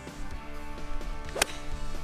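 A golf club striking a golf ball once, a single sharp crack about one and a half seconds in, over steady background guitar music.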